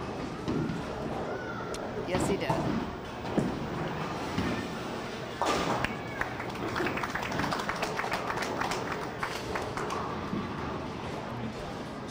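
Bowling-alley ambience: indistinct crowd chatter throughout, with a loud clatter of pins and pinsetter about five and a half seconds in, followed by a run of smaller clicks and knocks.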